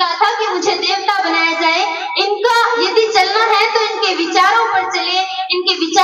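A girl's high-pitched voice, amplified through a handheld microphone, in a drawn-out, sing-song delivery with held, wavering notes.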